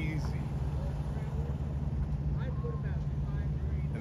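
Steady low rumble of an idling engine, with a faint voice in the background.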